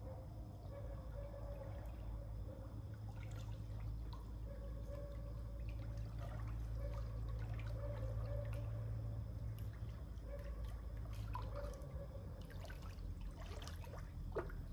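Gentle water splashing and dripping from a swimmer moving slowly through a pool, with the louder splashes near the end. A steady low hum runs underneath.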